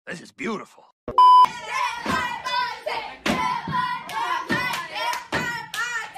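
A short, steady electronic beep about a second in, like a censor bleep. Then loud, excited voices shout over one another.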